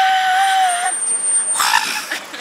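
A young woman's high-pitched yell, held on one note for about a second, then a short breathy outburst near the end.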